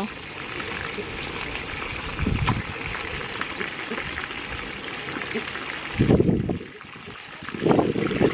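Steady sizzling hiss of tilapia deep-frying in hot oil in a disco wok over a propane burner. It is broken by low, muffled bursts about six seconds in and again at the end.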